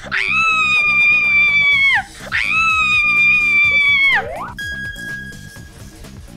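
A woman screaming in fright: two long, high screams, each held and then dropping in pitch at the end, over background music. Near the end a short steady high tone sounds.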